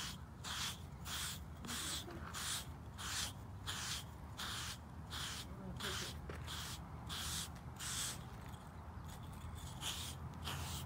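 Slick 'n Easy grooming block, a pumice-like stone, scraped in quick repeated strokes over a horse's shedding winter coat, about two scratchy strokes a second.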